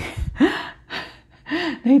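A woman laughing in a few short, breathy bursts.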